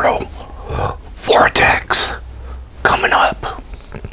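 A man's close-miked whispered speech in three short phrases, with breathy hiss.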